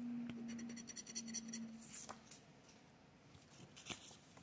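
Lottery scratch-off ticket card being handled and slid aside, with paper rustling and light clicks. A low steady hum sounds over the first two seconds, broken once about a second in.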